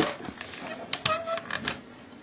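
Hard plastic parts of a Fansproject G3 toy trailer clicking and rattling as it is opened up by hand. There is a run of sharp clicks around the middle.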